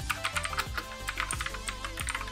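Computer keyboard keys clicking in quick, uneven succession as a command is typed, over quiet background music.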